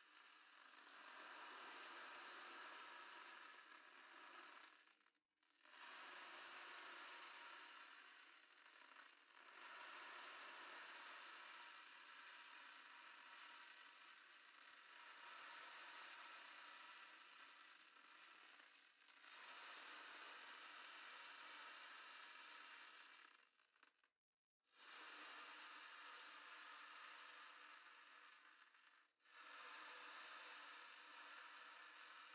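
Ocean drum (sea drum) tilted slowly back and forth, its beads rolling across the drumhead in a faint hiss that imitates breaking waves. The sound swells and fades in waves several seconds long, dropping out briefly each time the drum is tipped the other way.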